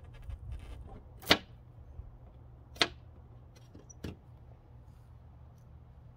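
A small flathead screwdriver prying chrome emblem letters off a car's painted fender, over heat-softened adhesive: three sharp clicks, the loudest about a second in, as the letters snap free.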